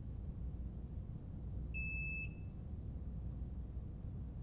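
A single short electronic beep from the Autel MS909 diagnostic kit: one steady high tone lasting about half a second, about two seconds in, over a faint low hum.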